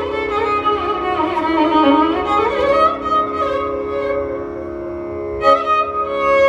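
Carnatic violin playing slow, sliding ornamented phrases over a steady tanpura drone, easing off in the middle and starting a new phrase near the end.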